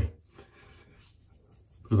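Fingertips rubbing against stubble on the neck, a faint scratchy rubbing, as the direction of hair growth is felt out.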